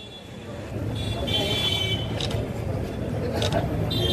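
Street background noise: a steady low traffic rumble that grows louder about a second in, with faint voices and a brief high tone between about one and two seconds.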